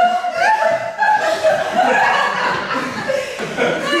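People laughing and chuckling, mixed with talk.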